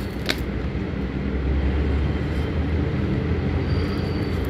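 Tarot cards being shuffled by hand, with a couple of sharp clicks near the start, over a steady low rumble that swells in the middle and is the loudest sound.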